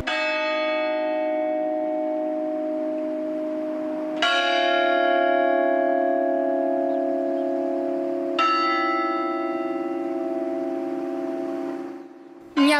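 A church bell tolling slowly, three strikes about four seconds apart, each left to ring on and fade: a mourning toll.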